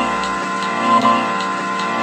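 Instrumental background music: a held chord with a soft tick about twice a second.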